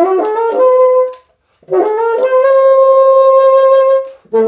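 Bassoon played through a Wolf Grundmann straight-bend bocal: a quick run of notes ending on a short held note, a brief break, then another rising run that lands on a long, steady high note.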